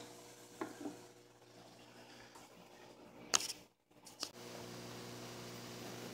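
Steady low hum of aquarium pumps with a soft fizz of fine air bubbles from a wooden air stone in the tank water. A sharp click comes about three seconds in, then a brief dropout, after which the fizz goes on steadily.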